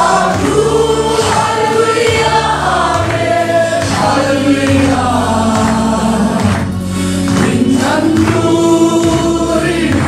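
A congregation of men and women singing a gospel worship song together, over an instrumental accompaniment whose low bass notes change about once a second.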